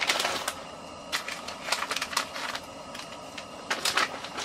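Plastic bag of shredded cheese crinkling and rustling in the hands, in irregular crackles.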